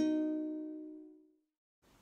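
Background music ending: its last notes ring out and fade away over about a second and a half, followed by a sudden drop to silence and then faint room noise near the end.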